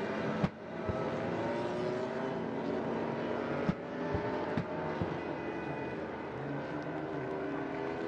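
Several 800cc four-stroke MotoGP race bikes on a slow-down lap, engines running at low revs with their pitches gliding up and down as riders blip the throttles. The sound breaks off briefly about half a second in and again near the four-second mark.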